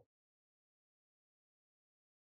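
Silence: the audio track is muted between narrated steps, with no sound at all.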